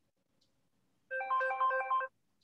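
A phone ringtone: a short melody of quick electronic notes, starting about a second in. The same phrase also sounds just before, so it is repeating.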